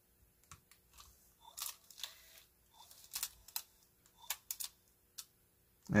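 Scattered light clicks and soft taps from an opened Aiwa HS-RX650 portable cassette player being handled in the hands, a plug seated in its jack.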